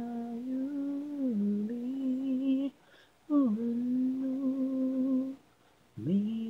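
One voice humming a slow melody a cappella in long held notes, in two phrases with short breaks about three seconds in and near the end.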